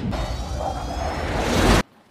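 Film trailer soundtrack: dense music and sound effects with rising whooshes, building up and then cutting off abruptly near the end.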